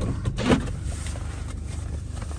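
A Chevrolet sedan's electric power window running as the driver's window is lowered, over a steady low hum in the car cabin, with a brief louder knock about half a second in.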